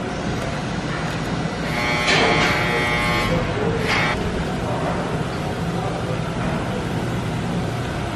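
Hand-turned screw-type bushing press pushing a polyurethane bushing into a BMW E46 M3 rear subframe, going in with less force than expected. A squeak about two seconds in lasts just over a second, with a shorter one near four seconds, over a steady workshop hum.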